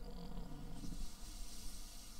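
A man's low hesitation hum, a drawn-out "uhh", trailing off within the first half-second or so, followed by a faint steady hiss.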